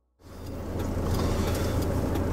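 Road noise from a 4WD driving on a sealed highway, heard from inside the cabin: a steady engine and tyre rumble that fades in about a quarter of a second in.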